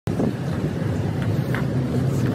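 Steady city street noise: a continuous rush of traffic mixed with wind on the microphone.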